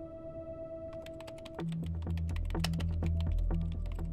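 Typing on a computer keyboard: a quick run of key clicks begins about a second in and goes on to the end, entering a password. Underneath is a score of held tones, joined about halfway through by a louder low bass swell.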